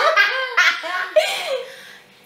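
Two women laughing hard together in loud, wavering bursts that die away near the end.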